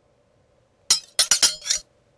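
A quick run of sharp, ringing clinks: a first strike about a second in, then four more in quick succession, all over within a second.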